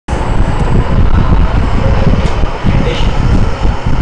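Loud, steady background rumble with hiss, picked up by the recording microphone.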